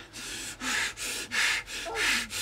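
A person breathing hard and fast in ragged gasps, about two breaths a second, as someone does in pain or distress.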